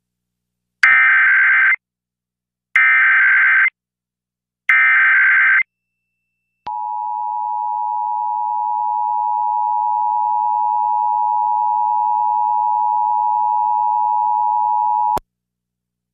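Emergency Alert System test signal: three one-second bursts of buzzing SAME header data tones with short silences between, then the steady two-tone EAS attention signal held for about eight seconds and cut off abruptly.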